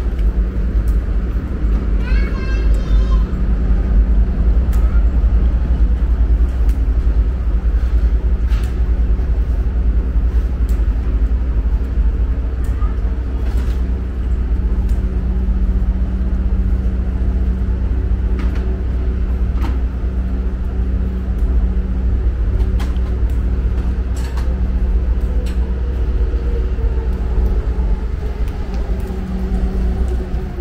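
Street ambience by a station bus rotary: a steady low traffic rumble with the hum of an idling engine, and a vehicle's engine pitch falling slowly near the end. A brief voice of a passerby comes in about two seconds in, and there are light clicks of footsteps.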